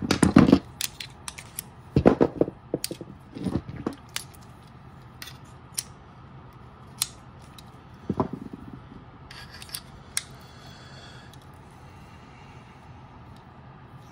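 Metal and hard-plastic clicks and clacks from handling a night-vision bridge mount and its optics' mounting shoes: a busy run of sharp clicks in the first few seconds, then scattered single clicks and one heavier knock about eight seconds in.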